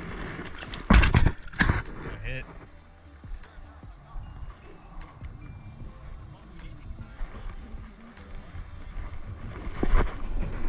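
Handling noise: two sharp knocks about a second in, then small clicks and rustles as a baitcasting reel's side plate is opened and its spool handled, over a low rumble of wind on the microphone.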